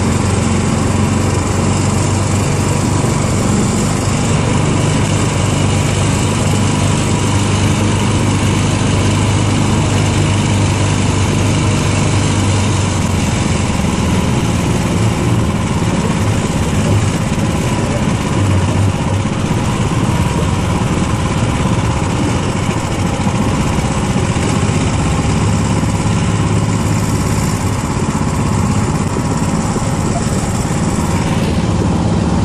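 Karakat, a homemade all-terrain vehicle on big low-pressure tyres, with its engine running steadily at an even pace while it drives along a dirt track, heard from the driver's seat.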